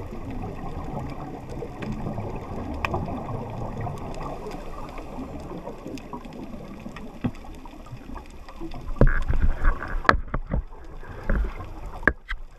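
Muffled underwater noise heard through a camera's waterproof housing: a steady dull rushing of water, then, from about nine seconds in, louder irregular bursts of bubbling and clicks from a scuba diver's regulator exhaust close to the camera.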